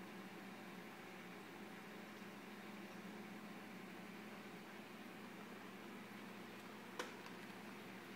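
Faint steady hum and hiss of a running reef aquarium's pumps, with one sharp click about seven seconds in.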